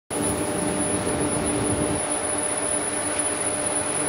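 Induction hardening machine for brake shoes running: a steady, high-pitched whine over a constant machine noise, with a lower hum that weakens about halfway through.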